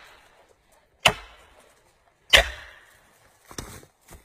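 Felling wedge being pounded into the back cut of a large tree: two hard strikes about a second and a quarter apart, each ringing briefly, then a lighter knock near the end.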